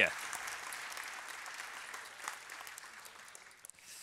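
Audience applauding, the clapping dying away gradually over a few seconds.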